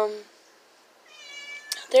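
A house cat meowing about a second in: one drawn-out, high-pitched meow that falls slightly in pitch.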